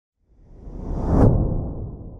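A whoosh sound effect that swells up out of silence, peaks a little over a second in, and fades away.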